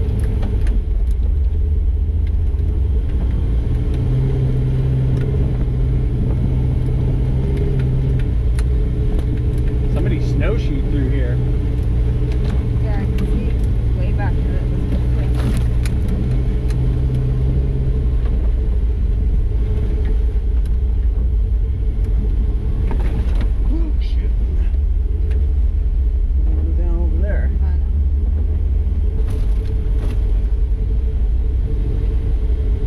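Lifted Chevy square-body 4x4's swapped 6.0 LS V8 running steadily, a low rumble, with a stronger, deeper engine note from about four seconds to eighteen seconds in.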